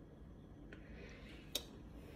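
A faint click, then one sharp, brief crack of a cracker about one and a half seconds in, over a low background.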